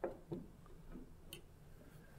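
A few faint, light clicks and taps as a brass-bolstered folding knife is set down and let go on a wooden tabletop, over quiet room hum.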